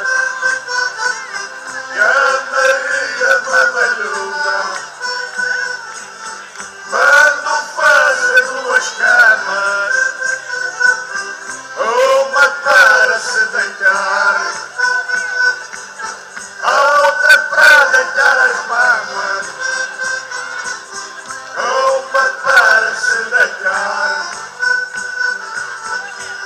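Live folk group playing a song through a PA system, male voices singing in phrases a few seconds apart over the instruments.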